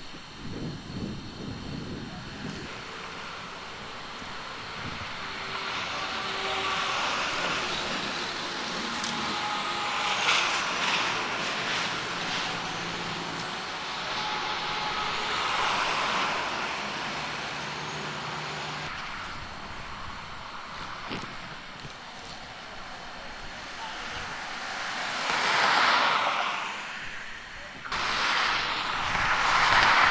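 Highway traffic passing: vehicles swell up and fade away one after another, with the loudest two passes near the end.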